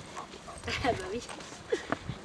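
A woman's voice speaking briefly and affectionately to a dog, over a low outdoor background.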